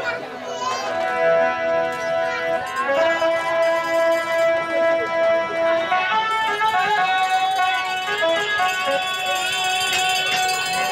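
Live folk-theatre accompaniment: a melody instrument plays a slow tune of long held notes that step up and down in pitch, taking on a wavering vibrato near the end.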